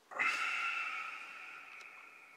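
Smartphone alert chime: a single tone that starts suddenly and dies away slowly over about two seconds.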